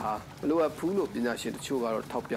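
Speech only: a news voice-over in Burmese, talking without a break.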